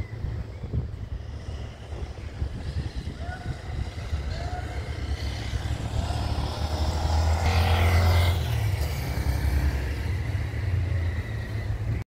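A motor vehicle passing on the street below, its noise building to a peak about eight seconds in and then fading, over a steady low rumble.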